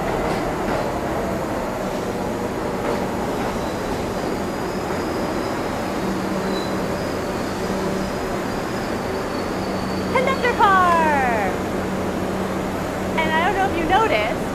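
R62 subway train on the NYC 3 line rolling into an underground station and slowing to a stop, with a faint high brake squeal in the middle. A steady low hum follows as the train stands at the platform.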